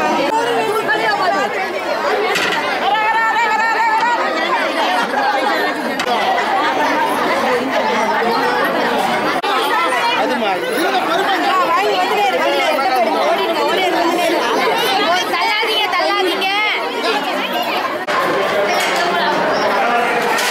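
A crowd of many people talking at once, a dense, unbroken chatter of overlapping voices with no single voice standing out.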